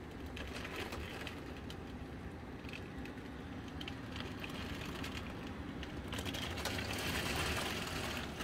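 Heavy rain on a window pane: a steady rush of rainfall with many small, irregular ticks of drops hitting the glass, growing a little louder about six seconds in.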